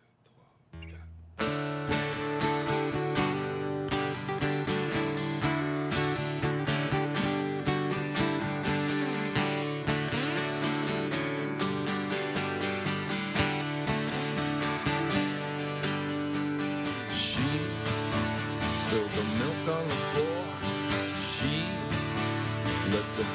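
Three acoustic guitars playing an instrumental intro, strumming a steady rhythm that starts suddenly about a second and a half in after a brief hush. Near the end a picked melody line with bent notes comes in over the strumming.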